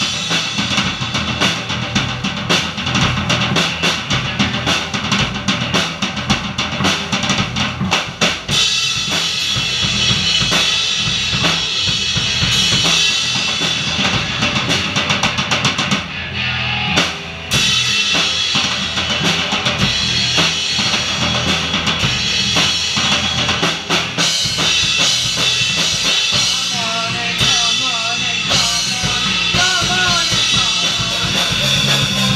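Live rock trio playing an instrumental passage on drum kit, electric guitar and bass guitar, the drums hitting densely throughout. The band briefly drops out about halfway through, then comes back in full.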